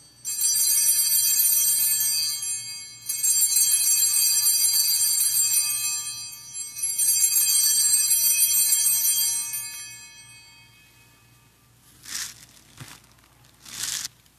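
Altar bells rung three times at the elevation of the host after the consecration, each ring fading slowly, followed by two short soft noises near the end.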